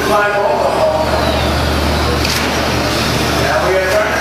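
Radio-controlled short-course trucks racing on an indoor dirt track, with a high whine that falls in pitch about a second in, under a steady hubbub of indistinct voices.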